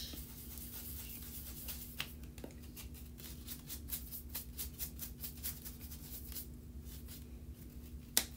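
Bristle brush swept in quick repeated strokes over heat-embossed cardstock, a scratchy swish about three or four times a second, wiping off excess Perfect Pearls mica powder; the strokes stop about six seconds in. A faint steady hum lies underneath.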